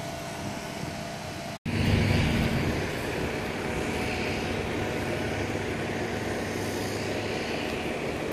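Steady car noise heard from inside a slowly moving vehicle: the engine running with a low hum and a haze of road and cabin noise. It drops out for an instant about one and a half seconds in, then carries on a little louder.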